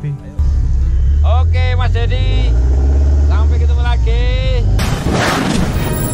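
Produced logo-sting sound effects: a deep steady rumble with two long pitched cries rising and falling over it, then a loud noisy burst near the end as the sting gives way to music.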